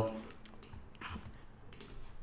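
A few faint, scattered keystrokes on a computer keyboard.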